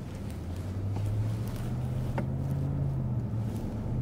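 Pickup truck's engine drone and road noise heard inside the cab, swelling over the first second as the truck pulls away and then holding steady while it cruises.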